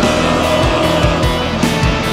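Black metal music: dense, distorted electric guitars over drums, playing steadily.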